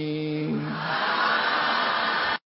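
A male voice holding the last drawn-out note of a Pali chant, which stops about half a second in and gives way to a steady hiss-like rushing noise.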